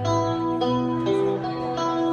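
Live band's electric guitars playing an instrumental passage with no singing, picked notes ringing on and changing about every half second.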